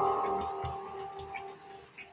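A chime ringing out and fading away over about a second and a half, with a few faint clicks underneath.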